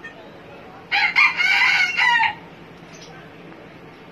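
A rooster crowing once, a loud pitched call of about a second and a half, starting about a second in.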